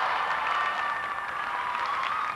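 Audience applauding in a gymnasium, with a held note of the show music under it.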